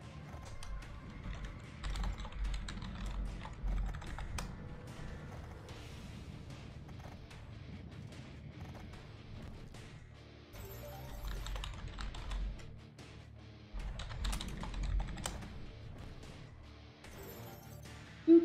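Quiet online slot-game music and sound effects, with low thumps three times and many light, quick clicks throughout.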